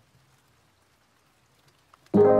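Near silence: only a faint, even hiss in the gap between two songs.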